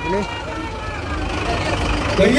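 Light truck's diesel engine running as the truck moves slowly forward, a steady low sound under crowd voices.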